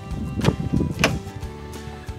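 Two sharp clicks about half a second apart from the camper trailer's entry door latch and handle as the door is opened, over steady background music.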